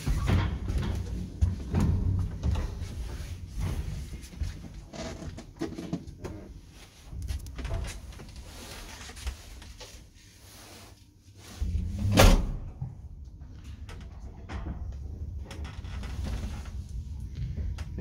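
Old ZREMB licence passenger lift in motion: a steady low rumble from the car and its machinery, with scattered clicks and knocks. A loud single clunk comes about twelve seconds in.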